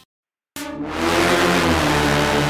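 Dead silence for about half a second, then a car engine sound effect starts abruptly and runs on, growing louder, at the opening of a podcast network's audio ident.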